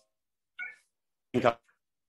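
Two short, clipped voice fragments from a video call, separated by dead silence: the audio is breaking up because the caller's connection is freezing.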